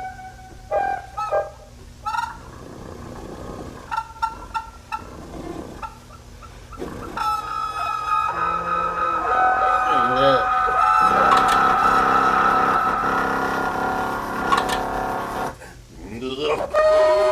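The Honkpipe, a novelty pipe-and-tubing contraption, sounding. First come short separate honks, then from about seven seconds in a long sustained, wavering honking tone that stops just before the end.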